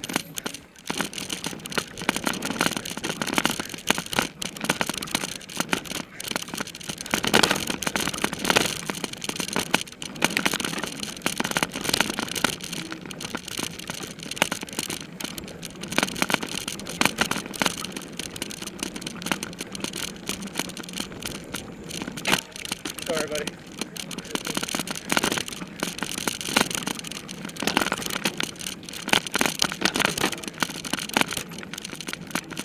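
Close, onboard sound of a mountain bike being ridden fast over rough dirt singletrack: a steady rush of wind noise on the microphone with constant rattling and knocking from the bike over roots and bumps.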